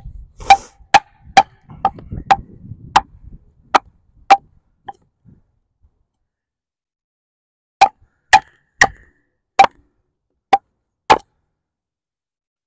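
Wooden baton striking the spine of a Takumitak Charge, a thick D2 steel tanto fixed-blade knife, driving the blade into a log to split it: a run of about nine sharp knocks, roughly two a second, then a pause of a couple of seconds and six more.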